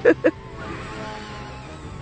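XK K130 RC helicopter in flight: a steady whine from its brushless motors and rotors, wavering slightly in pitch.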